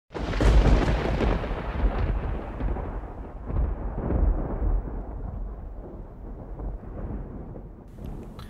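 A deep rolling rumble like thunder that starts suddenly, is loudest in its first second and swells again a few times as it slowly fades.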